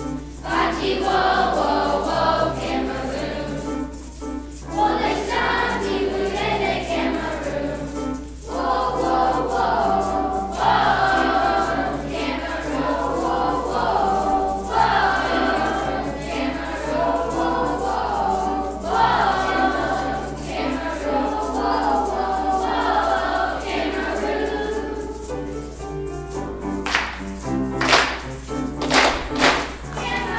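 Children's choir singing a song with grand piano accompaniment, the voices moving in phrases over sustained low piano notes. Near the end the singing gives way to a few sharp, accented strikes.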